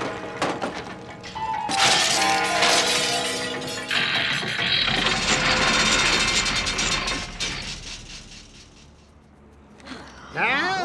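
Cartoon background music with crash sound effects: a sudden crash about two seconds in, then a longer crashing clatter from about four seconds that dies away. This is a metal toolbox falling into a big clock's gears and jamming them.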